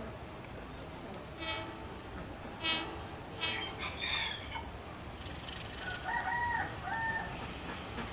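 A rooster crowing and chickens clucking, several short calls in the first half, then a few curling high whistled calls near the end. Underneath is the low steady rumble of a diesel train approaching in the distance.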